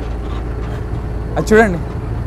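Steady low rumble of a bus engine and road noise heard inside the passenger cabin, with one short vocal exclamation about one and a half seconds in.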